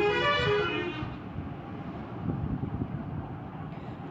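Background street traffic: a vehicle horn sounds in the first second, then a low, steady rumble of traffic.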